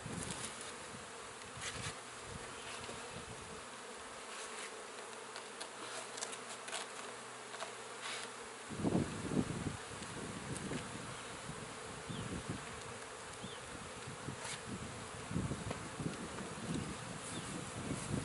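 Many honeybees buzzing in the air around a colony being opened up in a wall: a steady hum, with a few knocks and scrapes as pieces of siding are pried off and handled.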